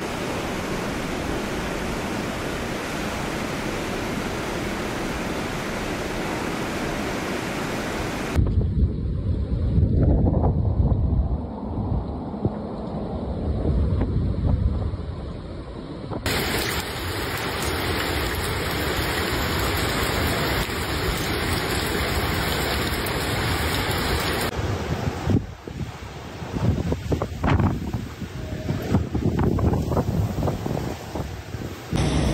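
Typhoon wind and rain heard over several short clips: a steady rush of floodwater cascading down outdoor steps, then low rumbling wind buffeting the microphone, a steady hiss of heavy rain, and uneven gusts of wind over the last few seconds.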